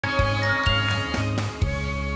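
Short television channel ident jingle: bright chiming notes over a few beats, ending on a strong hit a little past one and a half seconds in that leaves a chord ringing.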